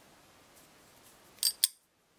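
Two short metallic clicks about a fifth of a second apart, from steel pliers bending a paper clip, with faint room tone before them.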